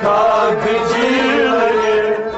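A group of men singing a Kashmiri Sufi kalam together, their voices held on long, wavering notes.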